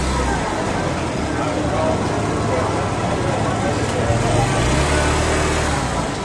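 Hot oil sizzling steadily as a batch of old-dough donuts deep-fries in a wide pan. A low hum drops out about half a second in and returns near the end.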